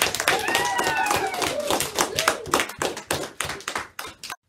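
A small group clapping by hand, with high children's voices calling out over the claps; it cuts off suddenly just after the end.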